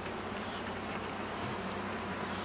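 Steady hum of a honeybee colony buzzing over an open hive as a frame is lifted out.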